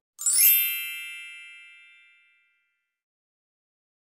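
A bright, shimmering chime sound effect, struck once and ringing away over about two seconds.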